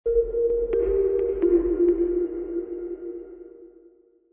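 Short electronic logo sting: sustained synthesizer tones over a deep bass rumble, with a few light ticks in the first two seconds. It fades out near the end.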